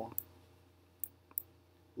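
A few faint, sharp clicks, about three, spaced apart over a low steady hum.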